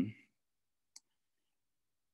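Near silence in a pause of speech, with a spoken "um" trailing off at the very start and one faint, short click about a second in.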